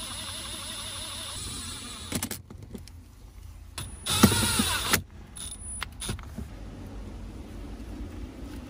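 Milwaukee cordless impact driver running, driving screws through a metal bracket into a dashboard. It runs steadily for about two seconds, gives a short burst, then makes a louder run about four seconds in whose pitch falls away as it stops, followed by a few clicks.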